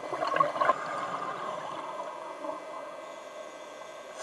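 Scuba diver's exhaled air bubbling out of the regulator, heard underwater: a crackly burst of bubbling in the first second, then a fainter steady underwater hiss.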